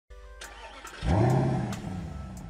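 Logo intro sound effect: a car engine revs once about a second in, rising in pitch and then fading, over light musical ticks.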